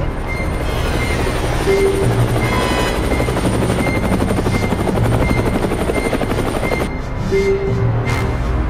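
Helicopter sound effect, its rotor and engine running steadily with a fast, even pulsing, over background music. The helicopter sound cuts off about seven seconds in, leaving the music.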